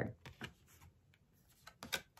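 Faint clicks and handling noises from a person at a desk, with a few sharp clicks close together near the end.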